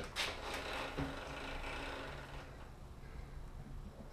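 Faint clicks and handling noise as a vertical milling machine's quill is drawn down by its feed handle, mostly in the first second, over a low steady hum.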